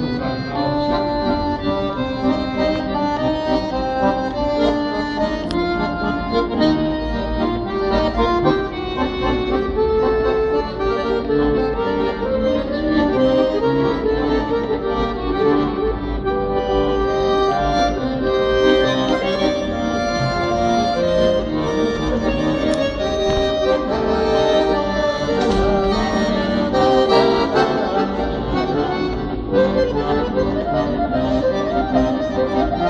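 Weltmeister piano accordion playing a tune without pause: a moving melody over held chords.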